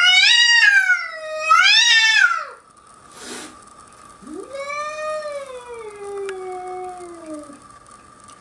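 Cat yowling in a tense standoff. First comes a loud, drawn-out caterwaul of about two and a half seconds that wavers up and down, then a short noisy burst, then a second long yowl that slowly falls in pitch.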